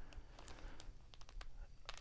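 Faint, scattered light clicks and rustles of a plastic-wrapped stack of trading cards being handled.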